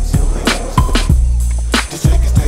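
Hip hop backing music with a steady, heavy bass beat.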